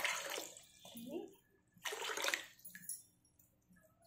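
Water poured from a cup into a steel saucepan of sugar, in two short splashing pours about two seconds apart, to make sugar syrup.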